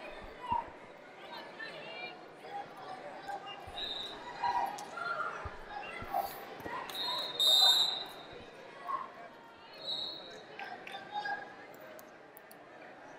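Indistinct voices in a large wrestling hall, cut by short high referee whistle blasts. The loudest blast, about seven and a half seconds in, starts the period, and shorter ones come at about four and ten seconds. A few scattered thuds are heard as well.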